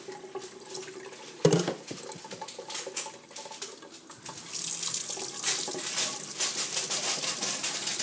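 Kitchen tap running into a stainless steel sink, with a single sharp knock about a second and a half in. About halfway through the water gets louder and brighter as the stream splashes over a hand.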